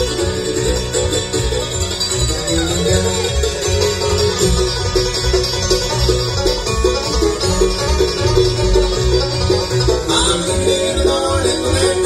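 Live acoustic bluegrass band playing an instrumental break, with a five-string banjo picking the lead over acoustic guitar, mandolin chop and upright bass.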